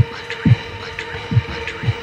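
Sparse drum and bass music: four deep electronic kick drums that drop in pitch, in an uneven pattern, with light ticks above them over a steady held note.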